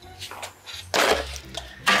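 A plate being put into a microwave oven: two knocks, about a second in and near the end, as the plate is set down inside.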